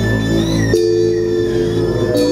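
Live band music led by a synthesizer: held keyboard chords over a steady low note, the chord changing about three quarters of a second in, with a thin high tone gliding up and down above.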